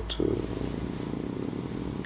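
A man's low, drawn-out hesitation sound held steadily for under two seconds, with a creaky, rattling quality. It falls between two stretches of talk.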